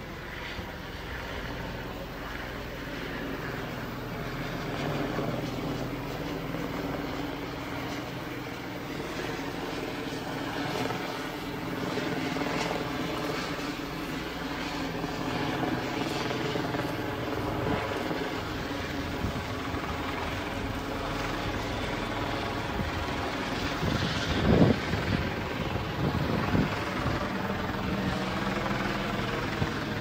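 Helicopter overhead, a continuous drone of rotor and engine that holds steady throughout. A few sharp knocks stand out late on.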